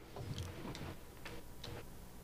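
A few soft, irregular clicks and knocks from people getting up out of their chairs and shuffling to stand, over faint room hum.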